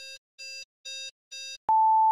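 Electronic countdown-timer beeps: four short, buzzy beeps about twice a second, then a click and one longer, louder, higher beep near the end, marking the start of the clock.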